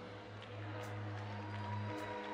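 Worship music: a soft chord held steady after the singing stops, over faint crowd noise.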